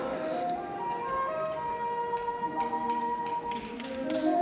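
Kagura accompaniment: a bamboo flute playing long held notes, with a few light taps.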